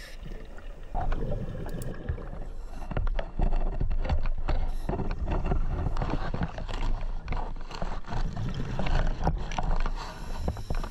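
Underwater sound picked up by a GoPro in its housing during a scuba dive: a muffled, uneven rumble and gurgle of water and bubbles with many small clicks, rising in loudness about a second in.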